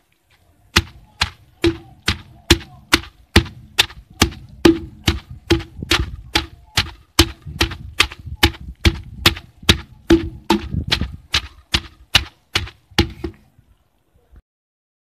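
Wooden pestle pounding fresh Euphorbia hirta leaves and stems in a mortar: a steady run of sharp thuds, a little over two a second, beginning about a second in, as the wet plant is crushed to a pulp.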